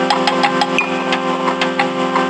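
MIDI tune played on a software synthesizer: a sustained low drone chord held under a quick run of short plucked notes.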